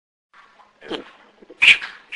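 Echovox ghost-box app playing short, garbled voice-like fragments through a small speaker, several in quick succession with the loudest about one and a half seconds in.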